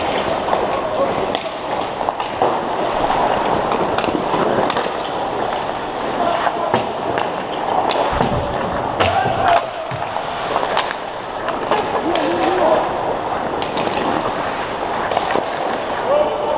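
Ice hockey skates scraping and carving on the ice during play around the net, with repeated sharp clacks of sticks on the puck and ice and occasional knocks, plus brief shouts from players.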